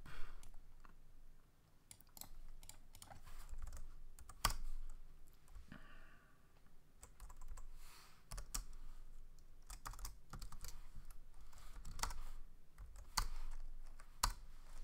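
Typing on a computer keyboard: irregular keystrokes in short bursts with brief pauses between them.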